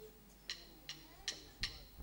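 A faint count-in for a jazz tune: sharp clicks keeping time, the last four coming faster, about two and a half a second, like a 'one, two, one-two-three-four' count.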